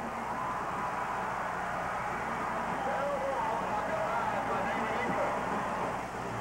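Stadium crowd noise: many voices blended into a steady wash.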